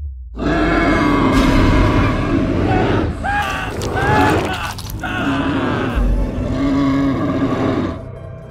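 Horror-trailer sound design: a loud, dense mix of deep rumble and sharp hits, with two pitched, voice-like cries that bend up and down a little before halfway. It begins after a brief gap and falls away at the end.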